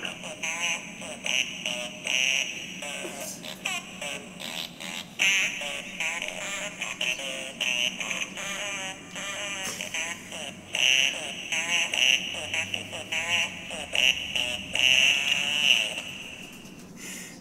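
Santa Butt novelty Christmas ornament playing a string of recorded fart sounds through its tiny speaker. The sound is tinny and warbling, in many short stop-start toots.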